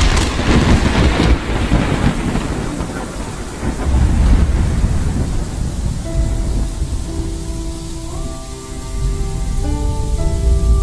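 Thunder rumbling and fading after a crack, with rain hiss, the low rumble swelling again about four seconds in and near the end. Held music notes come in about six seconds in.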